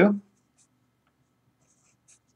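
Felt-tip marker writing on paper: a few faint, short strokes, mostly in the second half, right after the end of a spoken word.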